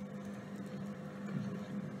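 Low, steady background hum and hiss of an old courtroom audio recording, with a faint thin tone above the hum, in a pause between words.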